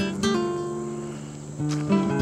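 Background music on acoustic guitar: a plucked chord rings and fades away, then new notes are struck near the end.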